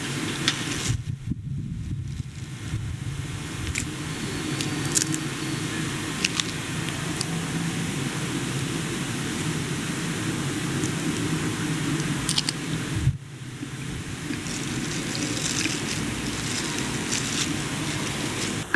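Steady low background hum and hiss of the room and recording, with a few faint clicks scattered through it and a brief drop in level about 13 seconds in.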